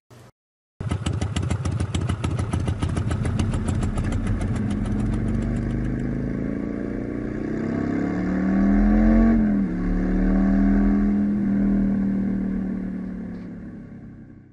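Motorcycle engine running as the bike is ridden. It starts after a brief silence with a fast, even pulsing. About eight seconds in the pitch rises and drops once, then it runs steadily and fades out at the end.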